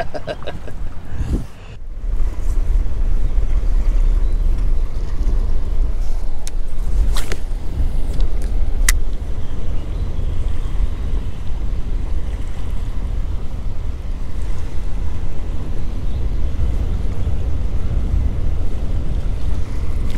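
Wind buffeting the microphone over open river water, a steady low rumble with water noise, and a few short clicks about a third of the way through.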